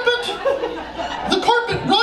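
A man's voice, talking and chuckling in a high, strained pitch, the words broken up by laughter.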